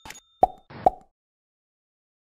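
Two short, sharp pops about half a second apart, each with a brief ring: sound effects of an animated logo sting.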